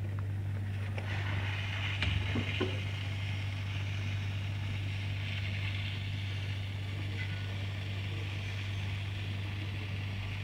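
Hot-air SMD rework station blowing heated air with a steady hiss over a low steady hum, with a couple of faint clicks about two seconds in.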